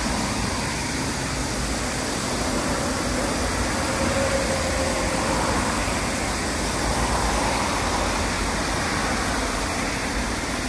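Steady outdoor noise, like distant road traffic, with a low rumble underneath and no distinct events.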